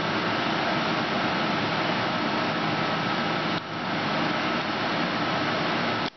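Steady fan-like whir of running machinery with a faint high whine. It breaks off for a moment a little past halfway, then carries on.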